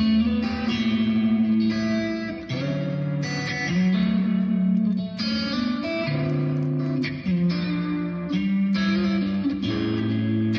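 Electric guitar playing a flowing, 'water-like' chord melody, picked with the fingers: held bass notes and chords with a higher melody ringing over them, the chords changing about every second.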